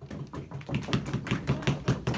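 A few people clapping: a quick run of separate claps that grows louder about half a second in.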